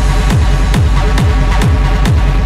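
Hard techno playing: a deep kick drum on every beat, each hit dropping in pitch, a little over two a second, with sharp hi-hat ticks between the kicks and a steady low bass underneath.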